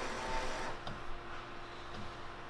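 Sawgrass SG800 sublimation inkjet printer working quietly while it processes a print job: a faint, steady mechanical whir with a few soft clicks.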